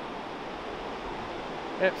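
Steady wash of ocean surf breaking on a beach.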